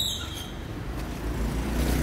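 A motor vehicle passing on a city street, its rumble growing louder toward the end.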